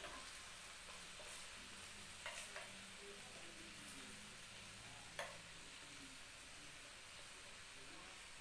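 A metal spoon knocks and scrapes against a clay tagine as pieces of meat are turned in oil, a few separate clicks over a faint, steady sizzle.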